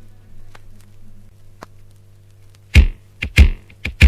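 Quiet gap between reggae songs: a low steady hum with a few faint clicks, then the next track's drum intro starts about three seconds in with several sharp, separate drum hits.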